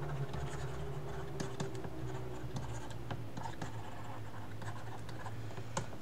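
A digital stylus writing by hand on a tablet's surface: light, irregular taps and scratches of the pen tip as the words are written, over a low steady hum.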